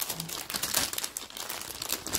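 Thin clear plastic bag crinkling continuously as a hand handles it, a dense run of small crackles.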